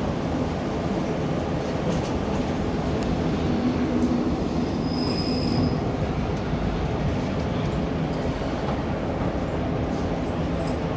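Inside a diesel train carriage, the steady rumble of the train running along the track, with a brief high squeal about five seconds in.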